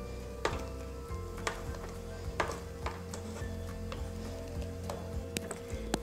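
Soft background music holding one steady note, with a few light clicks and scrapes of a silicone spatula against a metal saucepan as a thick cooked cream is stirred and lifted from the bottom of the pan.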